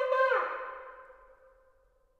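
Ram's-horn shofar blast ending about a third of a second in, its pitch sagging down as the note cuts off, then the room's echo dying away over about a second.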